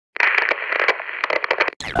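Radio static with crackles, like a radio tuned between stations, cutting out near the end into a short gliding tuning sweep.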